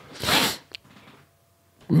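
A man's audible breath or sigh into a close microphone: one short burst of breathy noise lasting about half a second, then near silence.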